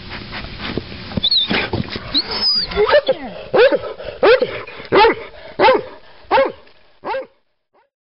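Hunting dog whining and yelping in a rapid series of short, high calls, about one every 0.7 seconds: the excited sound of a dog trying to reach an animal hidden among the rocks. The sound cuts off suddenly near the end.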